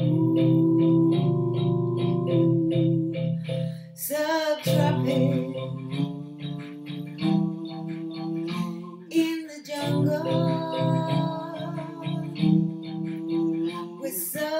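Electronic keyboard playing held chords with a steady rhythmic pulse, with a man and a woman singing along.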